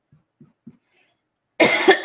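A woman coughs, suddenly and loudly, about one and a half seconds in, after a quiet stretch.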